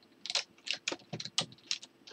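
Computer keyboard being typed on: an uneven run of some ten quick key clicks.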